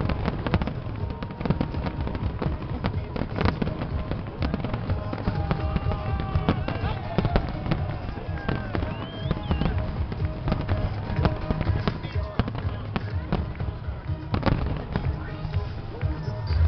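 Large fireworks display: shells bursting overhead in dense, rapid bangs with no let-up, with crowd voices running through it.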